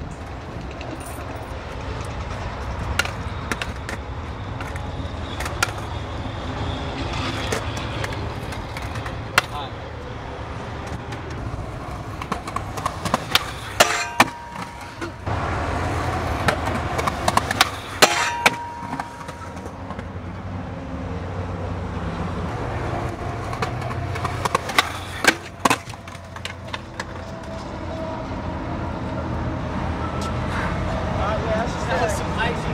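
Skateboarding on concrete: wheels rolling and a series of sharp clacks and knocks from the board's pops, truck hits and landings. They are scattered through the stretch and bunched near the middle and later on.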